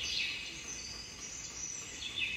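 Insects chirring steadily in a high, thin register, a constant background shrill with no other distinct event.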